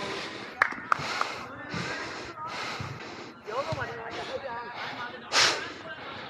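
Footballers' voices calling out on the pitch during play, with two sharp knocks about half a second and a second in, and a short loud breathy rush of noise near the end.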